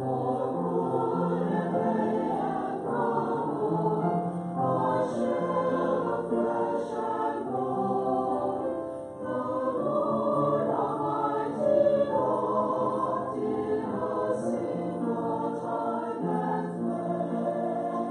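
Church choir singing the Christmas prelude, many voices holding sustained chords, with a short break between phrases about halfway through.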